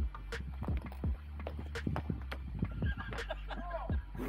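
An off-road vehicle's engine idling low and steady, with scattered irregular clicks and knocks over it.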